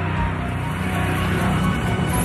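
Background music: a steady, sustained low drone with no beat.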